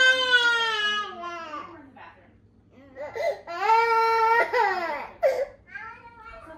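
A toddler crying. A long wail trails off downward and fades about two seconds in. After a short quiet gap, a second wail starts about three and a half seconds in and breaks into shorter sobs near the end.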